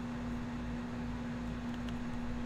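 Room tone: a steady low hum over faint hiss and rumble, with two faint ticks near the end.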